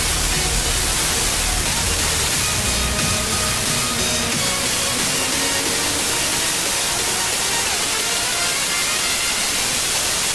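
Music from the Mexican FM station XHEL 95.1 "La Ele", received over sporadic-E skip, comes through faintly under a steady blanket of static hiss: a weak, distant FM signal.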